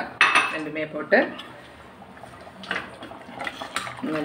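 Metal ladle clinking and scraping against a stainless-steel pressure cooker pot as curry is stirred, with a few sharp clinks in the second half.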